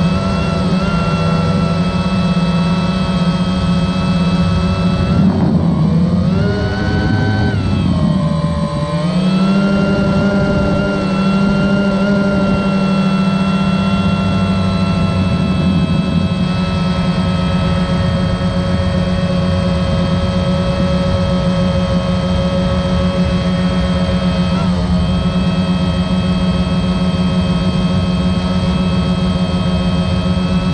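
DJI Phantom 1 quadcopter's four motors and propellers humming in flight, heard through the camera on board. The pitch dips and climbs again about five to ten seconds in as the drone manoeuvres, then holds steady.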